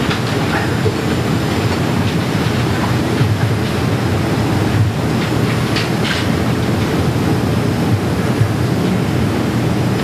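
Steady low rumbling background noise with no speech, with a couple of faint short rustles about six seconds in.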